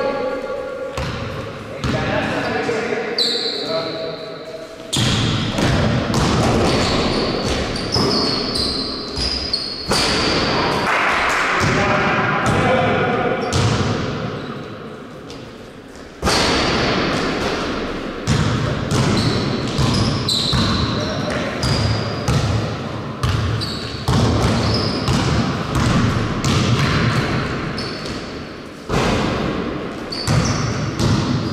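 Basketball game on a wooden-sounding gym floor: a ball bouncing in repeated sharp knocks as players dribble, mixed with short high squeaks of shoes on the court and players' voices.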